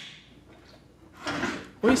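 A cello's endpin being drawn out of its socket: one short sliding scrape about a second in, lasting about half a second.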